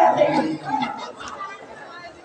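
Voices of actors speaking over one another. They are loudest in the first half second and fade away after about a second.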